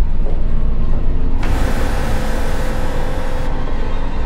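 Horror film soundtrack: a loud, deep rumbling drone with a held ominous tone, and a hissing noise swelling in about a second and a half in and fading out past the middle.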